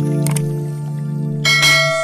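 Subscribe-button sound effects over background music with a sustained low drone: two quick mouse clicks near the start, then a bright bell chime about one and a half seconds in that rings on as it fades.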